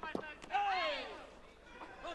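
Two sharp smacks of kickboxing blows landing, then a loud, high-pitched shout that falls in pitch over about half a second.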